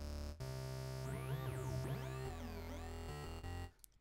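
Synthesizer sound run through a phaser effect, with sweeping tones gliding up and down over a steady low note. It drops out briefly near the end.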